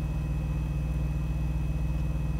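Semi-truck's diesel engine idling steadily, a low, even rumble heard from inside the cab.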